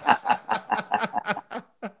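A man chuckling: quick, breathy pulses of laughter, about six or seven a second, dying away near the end.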